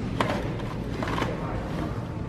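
A couple of sharp plastic clicks from a Graco stroller's tray and frame fittings being handled, one near the start and another about a second later, over steady store background noise.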